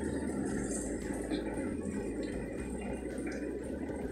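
Samsung top-load washing machine running its Eco Tub Clean cycle, a low steady hum with a faint wash of noise.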